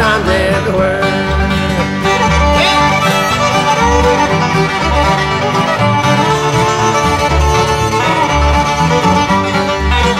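Old-time string band playing an instrumental break with no singing: a fiddle carries the melody over strummed guitars and a banjo, keeping a steady rhythm.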